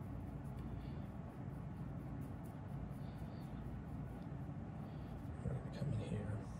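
Faint light clicks of a depth micrometer's ratchet thimble being turned down, several in the first half, over a steady low room hum.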